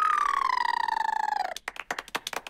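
A cartoon rabbit's special nose sound: one long nasal, hooting tone that slides steadily down in pitch. Near the end comes a quick patter of small claps.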